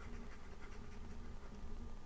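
Faint, irregular scratching of a pen stylus on a drawing tablet as handwritten working is erased and rewritten.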